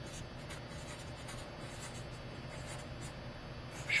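Marker pen writing on paper: a quiet run of short scratchy strokes as letters are drawn one after another.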